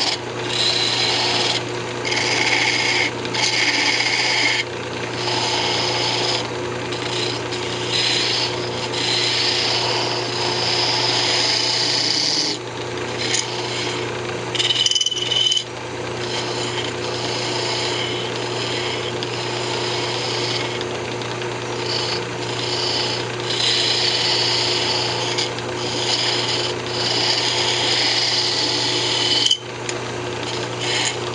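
A fingernail gouge cuts a spinning cocobolo blank on a wood lathe: a scraping hiss that comes and goes as the tool is worked along the wood, with short pauses about halfway through and near the end, over the steady hum of the running lathe.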